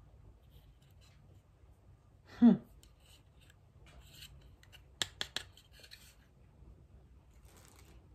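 Three or four quick, sharp metallic clicks about five seconds in, from fingers catching the thin wire strings of a small tin string-instrument ornament.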